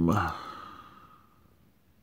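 A man's drawn-out 'um' trailing off into a breathy sigh that fades away over the first second and a half, leaving a quiet room.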